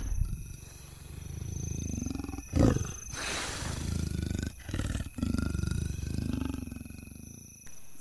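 A big cat's low, rasping growls, several swelling and fading in turn, with a louder burst about two and a half seconds in.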